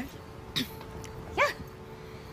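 Mostly speech: a woman's short reply "yeah", sliding up and down in pitch, about one and a half seconds in, after a brief soft sound about half a second in. A faint steady background tone is held underneath.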